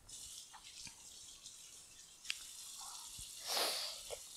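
Kitchen tap running faintly into a sink as hands are washed, with a couple of light clicks and a louder rush of water a little after three seconds in.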